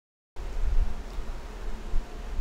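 Dead silence for about a third of a second, then a steady low electrical buzz with faint hiss underneath.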